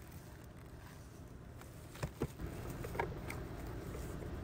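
Light handling clicks and knocks from a plastic-wrapped part lifted out of a cardboard box, two sharp ones close together about two seconds in, over a steady low hum.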